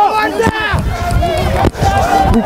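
Speech only: a commentator's voice talking continuously over the match.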